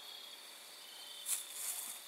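Crickets trilling steadily, a faint high-pitched drone, with a brief rustle a little over a second in.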